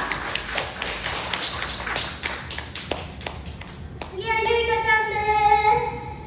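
A small audience clapping by hand, with scattered, uneven claps at the end of a song. About four seconds in, a long held note starts.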